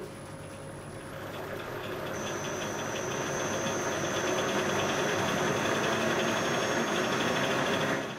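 Roll-to-roll electrode foil line running, its rollers and drive making a steady mechanical noise that grows louder over the first few seconds and then holds, with a thin high whine joining about two seconds in.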